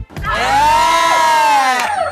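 A loud, high-pitched whooping cry of voices, rising then falling in pitch over about a second and a half, amid laughter.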